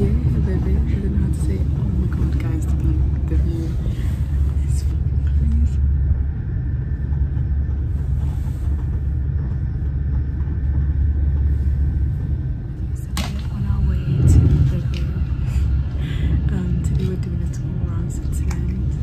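Steady low rumble of a moving passenger train heard from inside the carriage. A thin steady whine sits over it for several seconds in the middle, and there is a brief louder bump about two-thirds of the way through.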